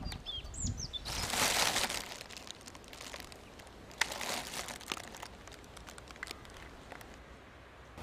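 Rural outdoor ambience: a few short, high bird chirps in the first second, then a brief rustling noise, and a single sharp click about four seconds in.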